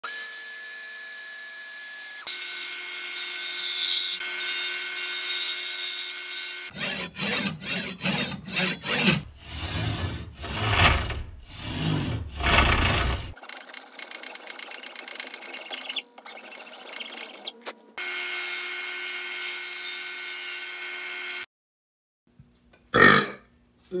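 Woodworking shop sounds: a bandsaw running as it cuts a poplar blank, then a saw cutting into wood clamped in a vise, first in quick short strokes and then in about four long strokes. A power tool then runs steadily, with two brief breaks. Near the end comes one loud, short burp.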